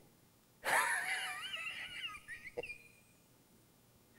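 A man's high, wavering, wheezy laugh. It starts suddenly under a second in, lasts about two seconds, and has a short knock near its end.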